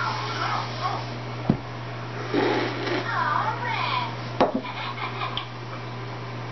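Beer poured from a glass bottle into a tall glass, with two sharp knocks about one and a half and four and a half seconds in. Faint, indistinct voices and a steady low hum sit underneath.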